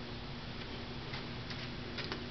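Room tone: a steady hiss with a faint low hum, and a couple of faint ticks in the second half.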